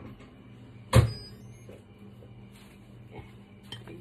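A single sharp knock about a second in, with a brief high ring after it: a ceramic plate knocking against the granite countertop as bread is put on it. A faint steady low hum runs underneath.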